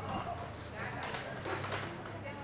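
People talking, indistinct voices that are not clear words.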